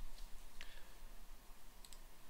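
A few faint computer mouse clicks over quiet room tone: one about half a second in and a quick pair near the end.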